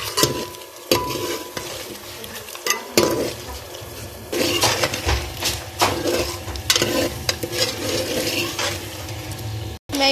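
Steel ladle stirring chicken in a metal pot, scraping and clinking against the pot in irregular knocks, over the sizzle of the chicken being fried in oil and masala.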